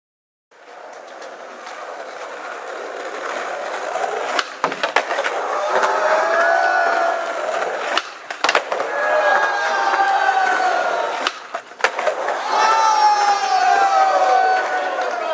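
Skateboard wheels rolling on concrete, with the sharp cracks of tail pops and landings in three pairs: just before 5 seconds, around 8 seconds and around 11 to 12 seconds. Voices call out in long drawn-out shouts between the tricks.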